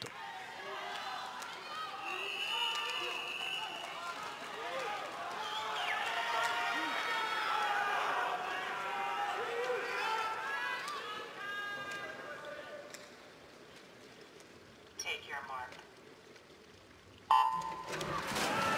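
Crowd in a swimming arena cheering and calling out, then falling quiet for the start. Near the end the electronic start signal sounds sharply as the relay's opening swimmers dive off the blocks.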